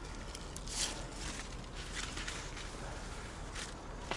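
Faint rustling of grapevine leaves and shoots being handled, with a few soft clicks about half a second in and again near the end.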